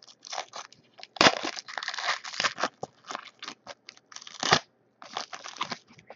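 Trading-card pack wrapper being torn open and crinkled by hand, in irregular crackling bursts with short pauses between them.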